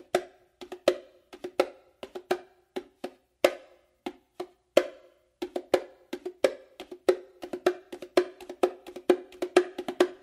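Bongos played by hand in a repeating five-stroke roll pattern of quick finger strokes and slaps. The strokes come in small spaced groups at first and grow faster and denser from about halfway through.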